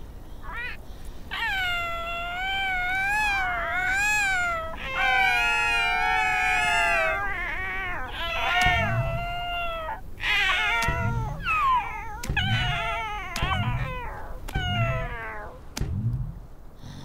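Cartoon seal pups' high, cat-like vocalizations. In the first half they are long, wavering, sing-song calls, two at once for a while. In the second half the calls are shorter and gliding, over soft low thumps about once a second.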